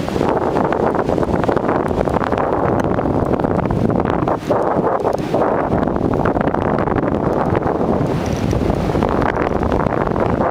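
Wind buffeting the camera's microphone in a parasail flight: a loud, steady rush with a brief dip about four seconds in.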